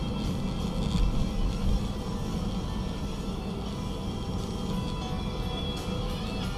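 Music from the car radio playing inside a moving car's cabin, over steady road and engine rumble.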